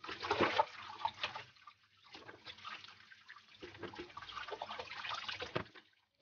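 Apricots being washed by hand in a plastic bowl under running tap water: water splashing and trickling with small knocks of the fruit, pausing briefly about two seconds in.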